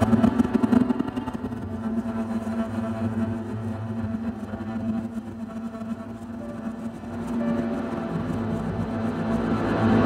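Improvised ambient music from electronics, electric guitar and double bass: a low sustained drone with long held tones, thinning out around the middle and swelling louder again toward the end.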